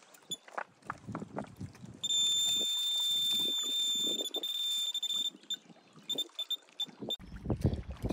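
Electronic bite alarm on a fishing rod pod sounding a steady high-pitched tone for about three seconds, then a run of short, irregular beeps. Light handling knocks come before it.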